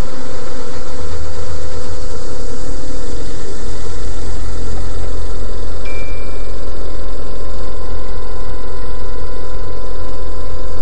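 Loud, steady mechanical rumble with a constant hum. A short high beep sounds about six seconds in.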